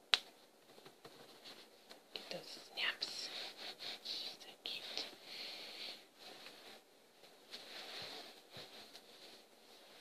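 A snap fastener on a baby onesie clicks shut at the start, followed by soft rustling of the onesie's fabric under the hands, heaviest from about two to six seconds in and again near the end.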